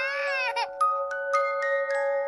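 A baby's cry with a wavering pitch breaks off about half a second in. Then a slow lullaby melody of bell-like struck notes begins, a note about every third of a second, over a steady held tone.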